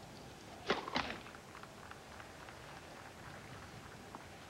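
Two sharp knocks about a third of a second apart, then faint scattered clicks over a low, steady court background.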